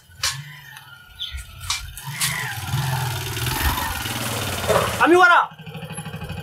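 A vehicle engine starts and runs, growing louder toward about five seconds in, then settles into a steady idle.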